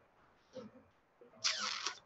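Mostly quiet, with a faint brief sound about half a second in, then a man's short breathy exhale lasting about half a second near the end.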